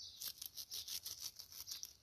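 Hands picking coriander among leafy plants: leaves and stems rustling and breaking off in a quick run of faint, crisp rustles, several a second.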